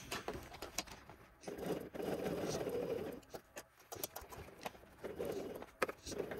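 Bernina 770 sewing machine stitching a seam in faux leather in short, quiet runs: one run of about a second and a half, then a shorter one near the end, with small handling clicks in between.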